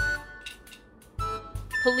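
Short electronic musical sound effect of steady beeping notes: one right at the start that quickly fades, then another tone about a second in and a higher one near the end, with a quiet gap between.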